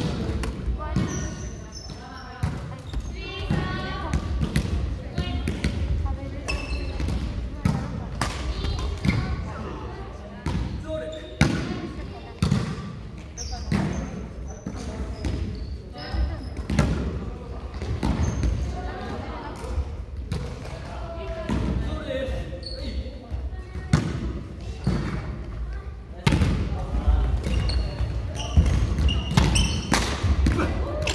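Badminton doubles play in a large gym hall: rackets striking a shuttlecock in sharp cracks at irregular intervals, with shoes squeaking and thudding on the wooden court floor. Players' voices are heard among the hits.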